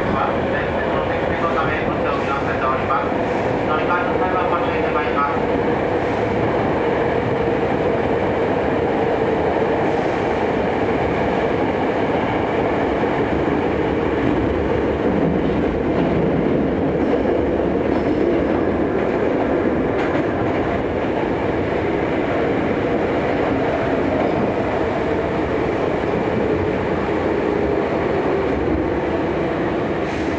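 Hankyu 7300 series commuter train running through an underground subway tunnel: a steady, loud rumble of wheels on rail and running gear, with a constant hum from the motors.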